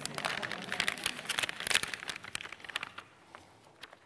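Packaging of Nestlé Toll House cookie dough crinkling and crackling as it is handled and opened: a run of quick crackles over the first three seconds that then thins to a few faint clicks.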